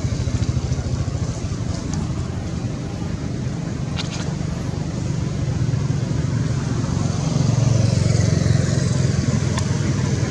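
A low, steady engine rumble with a rapid even pulse, growing a little louder after about seven seconds; one brief sharp click about four seconds in.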